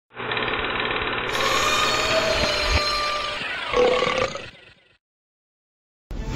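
Intro sound effect: a dense noisy sound with a few gliding tones in it, fading out about four and a half seconds in.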